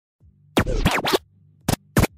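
Record-scratch effects opening an electro house DJ mix: a long scratch with pitch swooping up and down starting about half a second in, then short sharp scratch stabs, over a faint low held tone.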